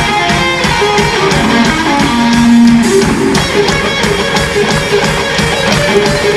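Live rock band playing an instrumental passage: an electric guitar line over a steady drum beat, with one note held for about a second, starting two seconds in.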